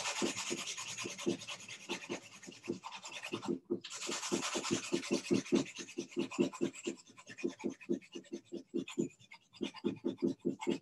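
Drawing pencil being sharpened with quick back-and-forth rubbing strokes, about five a second, each with a scratchy hiss. The strokes pause briefly about three and a half seconds in, then resume.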